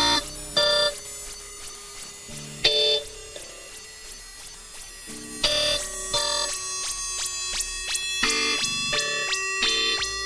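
Electronic tekno music in a stripped-back breakdown with no kick drum. Short bright synthesizer stabs come every one to three seconds over fast, even, ticking percussion.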